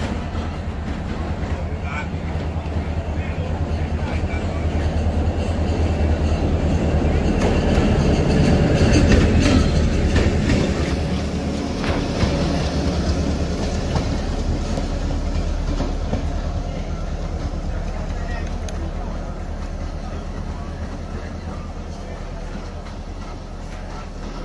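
EMD G8 diesel locomotive running with a steady low engine hum that grows louder to a peak about nine seconds in as it passes close alongside, then fades away.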